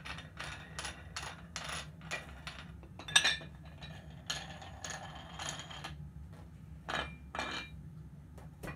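Metal weight plates and chrome dumbbell handles clinking and clanking as they are handled: a string of short metallic knocks, some ringing briefly, with a louder clank about three seconds in and two more near the end.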